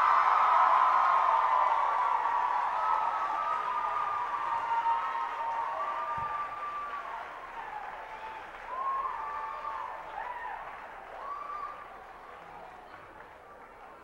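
Audience applauding and cheering, with high-pitched whoops and shouts over the clapping, dying down gradually until only faint scattered calls remain near the end.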